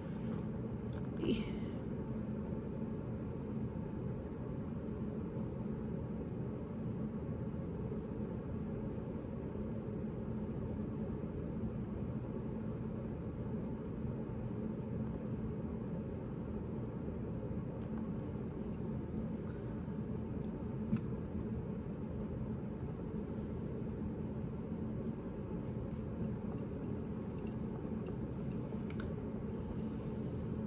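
Steady low background hum with a faint constant tone, and a couple of brief faint clicks, one about a second in and one about two-thirds of the way through.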